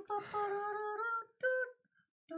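A man singing a wordless tune in a high voice: one long held note of about a second, then a short higher note.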